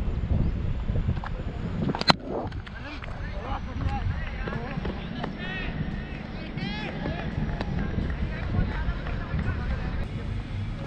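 A cricket bat hitting the ball: one sharp crack about two seconds in, close to the helmet-mounted microphone, over a steady low rumble. Voices call out a few seconds later.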